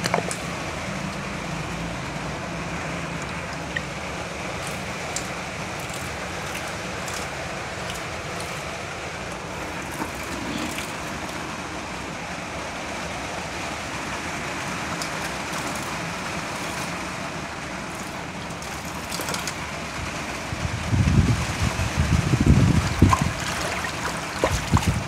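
Water pouring and splashing over a smartphone, a steady rushing hiss, with a run of louder low bumps near the end.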